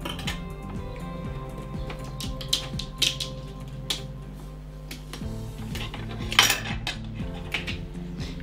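Thin metal border dies being peeled off die-cut cardstock and set down: a few scattered small clicks and clinks with light paper handling, the sharpest about six and a half seconds in, over background music.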